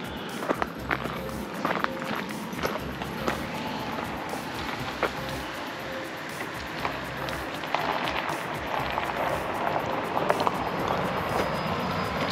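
Footsteps crunching on a gravel shoulder as a person walks, with scattered short clicks and thumps over a steady outdoor noise.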